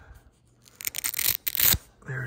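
Hook-and-loop strap of a wrist air compression bandage being peeled open: a rasping rip in several quick bursts lasting about a second, starting a little under a second in.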